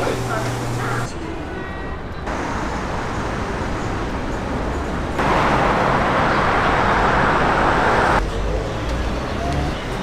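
City street sound cut together from several short clips: traffic noise and background voices. The loudest part, from about five to eight seconds in, is a car driving past close by.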